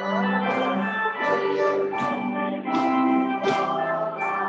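Hymn music led by an organ-like keyboard: held chords, with a short, crisp accent about every half second.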